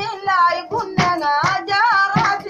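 A high voice singing a wavering, repetitive melody over a steady percussive beat of about three strikes a second.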